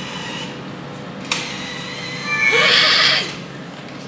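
A woman's short, breathy laugh near the end, after a single sharp click from the bus card top-up machine about a second in, over a faint steady machine hum.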